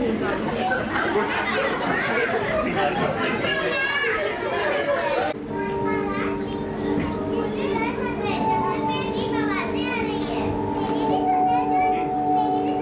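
Many children's voices overlapping. About five seconds in the sound cuts abruptly to held chords of background music, with children's voices over them.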